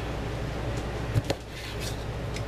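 A meat cleaver chopping through a smoked sausage onto a plastic cutting board: two sharp knocks in quick succession a little over a second in, over a steady low hum.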